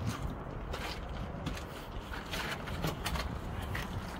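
Irregular scuffs, scrapes and light knocks of shoes and hands on rock as people clamber into a narrow rock crevice.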